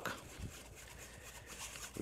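Faint swishing of a wire whisk working flour into stock inside a fine-mesh strainer, making a paste to thicken the stew.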